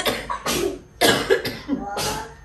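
A person coughing in a fit, about five short coughs in quick succession, a sign of illness in the house.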